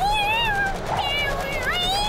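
Cartoon cat meowing: a long meow that rises and falls, then a second rising meow near the end.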